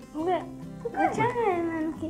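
A child's high-pitched whining cries: a short one, then a longer one that falls in pitch, as a protest at not being allowed to use the stove. Background guitar music plays underneath.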